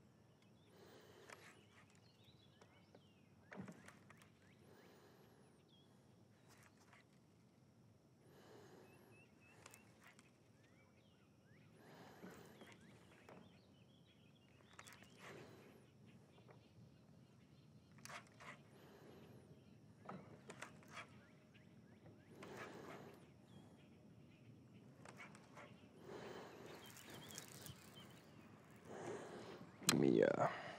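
Near silence: faint outdoor background, with soft, irregular swells of noise every two to three seconds.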